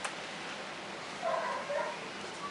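A house cat meowing faintly once, about a second in, over quiet room tone.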